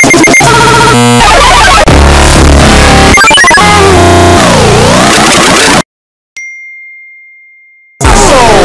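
Very loud, distorted meme-edit mash-up of pop music and sound effects, a chaotic wall of sound with a swooping pitch sweep, that cuts off suddenly almost six seconds in. After a brief silence, a single high ding rings out and fades away.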